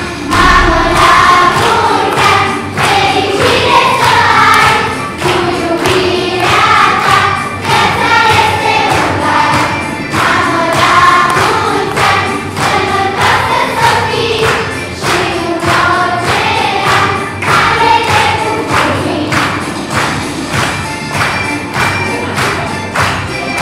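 Children's choir singing a song in Romanian over an accompaniment with a steady beat.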